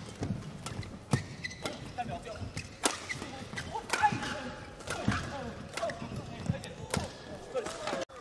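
Badminton doubles rally: rackets strike the shuttlecock in quick exchanges, about two hits a second, while court shoes squeak on the mat. The hits stop shortly before the end as the point finishes.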